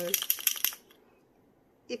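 The metal mixing ball rattling inside a gold paint marker as it is shaken: a fast run of sharp clicks lasting under a second.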